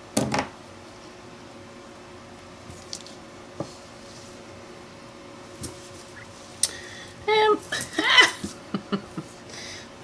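Craft supplies being handled on a tabletop: a sharp clatter right at the start, a few light taps and clicks, then a busier patch of handling near the end with a brief murmur of voice.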